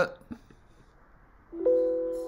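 A single mouse click on the simulator's Run button shortly after the start, then, about one and a half seconds in, a steady electronic tone of several held pitches begins.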